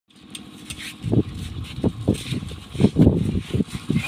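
Bicycle rattling and thudding as it is ridden, with irregular low thumps starting about a second in.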